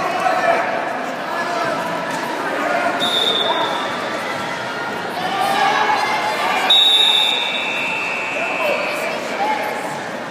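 Voices and chatter in a large gym hall, with two short high-pitched steady tones about three and seven seconds in, the second one louder.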